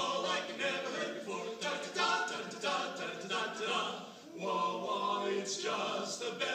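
Male vocal quartet singing a cappella, close harmony without instruments, with a short break between phrases about four seconds in.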